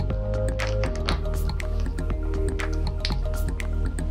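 Background music: an instrumental track of sustained notes with short, evenly spaced percussive clicks.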